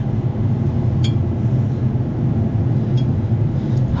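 A steady, loud, low mechanical hum, with two faint light clicks about a second in and near three seconds in.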